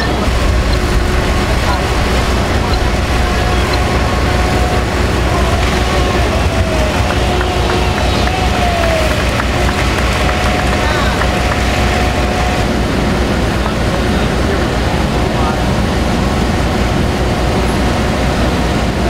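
Steady low rumble of idling fire engines, with indistinct voices in the background.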